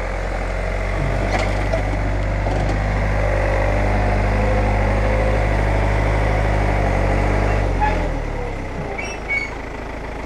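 Tractor diesel engine running steadily close by, swelling slightly and then fading away about eight seconds in.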